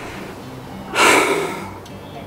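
A man takes a loud, breathy gasp about a second in, over soft background music.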